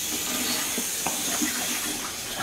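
Water running steadily from a bathroom tap, an even hiss.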